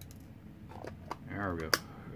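Small plastic clicks and taps as loose diamond-painting drills are handled and put back into their storage container, with one sharp click near the end.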